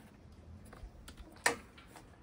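Plastic MC4 four-to-one solar branch connector snapping into place, one sharp click about one and a half seconds in, with a few faint ticks of cable handling around it.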